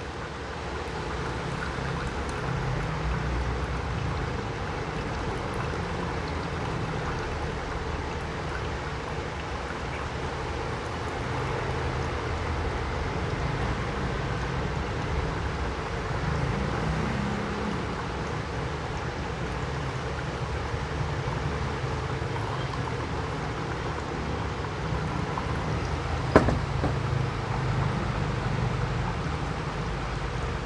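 A thin stream of hot water poured steadily from a gooseneck kettle onto coffee grounds in a paper-lined pour-over dripper: the main pour of the brew, over a low steady rumble. A single sharp knock comes near the end.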